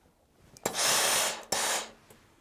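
Steam iron pressing a quilt block, letting out two hissing bursts of steam: the first about a second long, the second shorter right after it.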